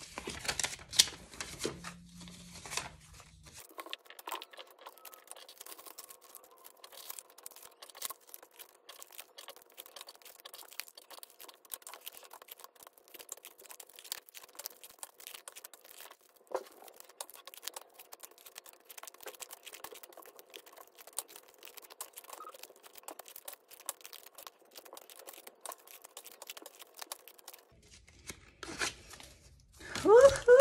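Paper money and paper envelopes rustling and crinkling as folded bills are pulled out and sorted by hand: a dense, quiet run of small crackles and rustles.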